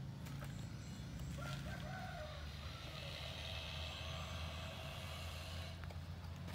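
Light clicks and taps as a baby monkey reaches into and grips a clear plastic snack jar, over a steady low hum. A faint animal call sounds in the background about two seconds in.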